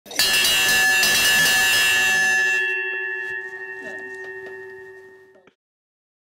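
Brass ship's bell rung hard and fast by its clapper rope for about two and a half seconds, then left ringing with a clear, fading tone. The ringing stops suddenly near the end.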